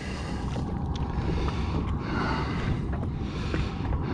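Steady wind and sea noise aboard a small fishing boat on open water, with a low rumble and a few faint ticks.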